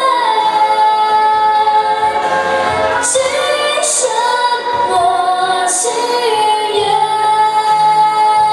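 A young girl singing a Mandarin pop song into a handheld microphone over a karaoke backing track, holding long notes near the start and again near the end.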